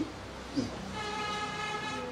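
A faint, distant horn-like tone holds one steady note for just over a second, starting about a second in.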